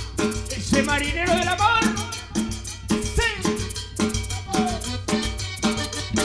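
A guaracha band playing live: a steady drum and percussion beat under a melody whose notes bend up and down.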